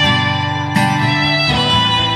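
Acoustic guitar strummed and a violin bowed together in a short instrumental passage, with held notes and the chord changing twice.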